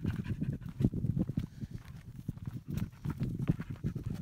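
A dog panting, with rapid, irregular footsteps on a rocky dirt trail.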